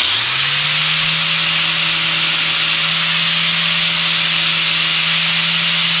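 DeWalt angle grinder fitted with a sanding disc switched on, winding up to speed with a rising whine in about a second, then running steadily at full speed.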